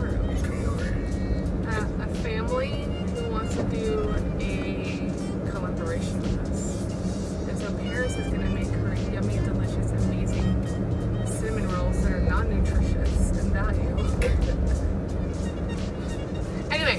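Steady engine and road rumble inside a moving car's cabin, with music playing and scattered brief bits of voice over it.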